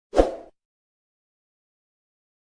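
Subscribe-button animation pop sound effect: one short pop with a low thud, over in under half a second near the start.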